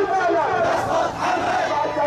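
A large crowd of marchers chanting slogans, many voices shouting together.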